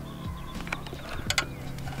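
A few light metallic clicks as a hex key works a bolt on a motorcycle's exhaust hanger bracket, over faint steady background music.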